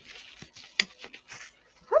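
Plastic bubble wrap crinkling and rustling in short, scattered crackles as it is pulled off a small tube by hand.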